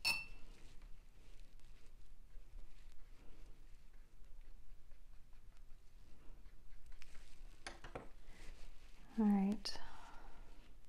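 A paintbrush knocking against a water jar, with a ringing chink right at the start and again near the end and light taps between. A brief hummed voice sound comes just before the end.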